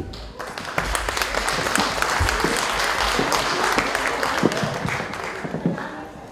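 Audience applauding, a dense clatter of many hands that starts just after the beginning and thins out near the end.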